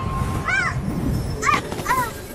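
Three short, high yelps from a small fox, each rising and falling in pitch, over a low rumble.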